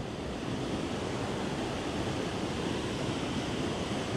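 A small mountain stream rushing over a rocky cascade into a pool: a steady wash of running water.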